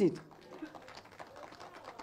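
A woman's voice through a public-address microphone finishes a word, then a pause of faint background sound.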